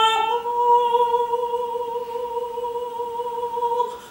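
Operatic soprano singing unaccompanied: she steps up onto one long held note about a third of a second in and sustains it steadily for over three seconds, releasing it just before the end.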